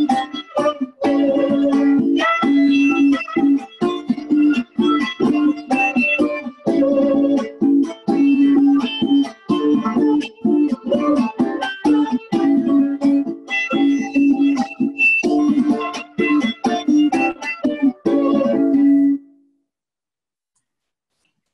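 Venezuelan cuatro strummed in a steady rhythmic chord pattern, with a violin playing the melody over it: a Chilean tune arranged for the duo. The playing breaks off about a second before the end.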